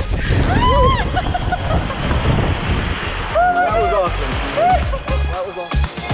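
Water rushing and splashing under a raft sliding down a water-park raft slide, with the riders' excited shouts, over background music.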